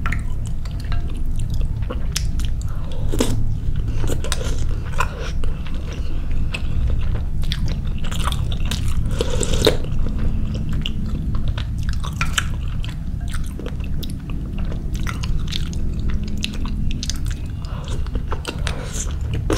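Close-miked chewing of soft meatballs and soup, with many short, wet mouth clicks and smacks. A steady low hum sits underneath throughout.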